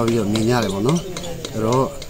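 A man talking.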